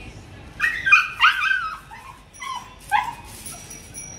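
French bulldog barking in a quick run of about seven high-pitched barks, starting about half a second in and stopping about three seconds in. The dog is reacting to a bicycle, typical of its urge to chase bikes.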